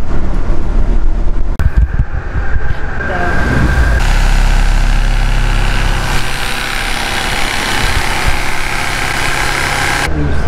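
A loud, steady motor hum, changing in tone a couple of times in the first four seconds.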